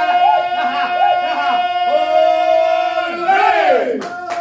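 Ganga, the unaccompanied Herzegovinian folk singing of a small group of men: rough, loud voices in close harmony, with one long note held steady while another voice swoops up and down around it. Near the end the voices slide down together and the song breaks off.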